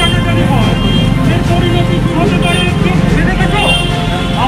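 A performer's voice over a microphone and loudspeaker, speaking in a stage delivery, over a steady low rumble.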